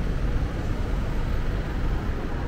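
Steady low rumble of city street traffic, with no single vehicle standing out.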